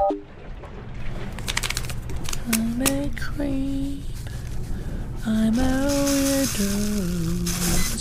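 A person humming a slow tune in a few held, stepped notes, with light clicking handling noises before the humming and a hissy rustle under the later notes.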